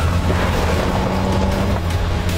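A vehicle engine running with a steady low drone and a held hum that cuts out near the end.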